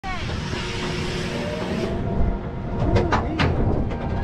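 Steady wind and running noise from a dive-coaster train as it creeps over the crest toward the drop. In the second half come short shouts from riders.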